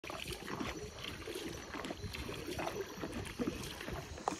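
Canoe being paddled through water: irregular paddle splashes and light knocks against the hull.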